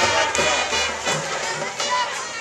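School marching band brass and drums playing over crowd noise from the stands.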